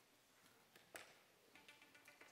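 Near silence: faint room tone of a hushed auditorium, with one small tap about a second in.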